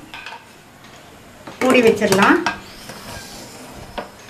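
Lid of a Prestige Deluxe Alpha stainless steel pressure pan being set on the pan and turned to lock: about a second of metal scraping and clattering on the rim near the middle, then a short click at the end.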